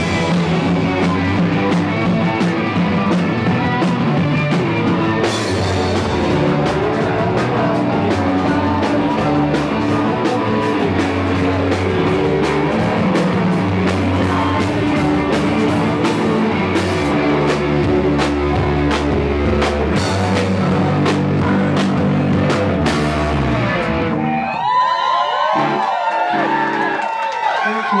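A live punk and power-pop band playing a song on electric guitar, bass guitar and drum kit. The song ends about 24 seconds in and the full band drops out.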